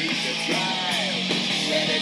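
Rock music with electric guitar playing through a small aluminium-cased Bluetooth speaker, with almost no deep bass.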